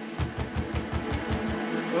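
Rapid, repeated knocking on a wooden door, a fast even run of low knocks starting just after the beginning.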